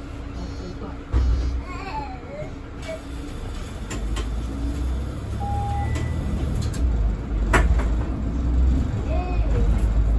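Cabin sound of a Mercedes-Benz Citaro 2 city bus under way: a low engine and drivetrain rumble that grows louder from about four seconds in. A thump comes about a second in, and a sharp click near the middle.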